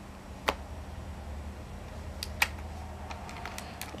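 A few faint clicks from working a laptop, one about half a second in and two close together a little past two seconds, over a low steady hum.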